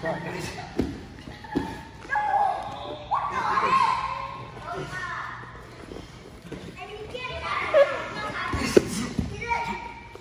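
Children's voices calling out, with a few dull thumps of bodies on a wrestling mat, the sharpest near the end.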